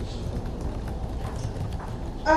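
Computer keyboard typing: a quick run of light key clicks over a steady low background rumble.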